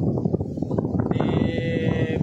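Wind on the microphone and choppy sea waves washing onto the shore, a steady rough noise. A brief high-pitched tone sounds over it in the last second.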